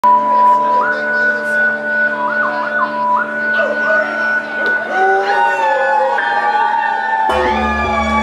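Live band playing a song intro: sustained high tones slide up and down in pitch over a steady low drone. The bass and drums come in heavily about seven seconds in.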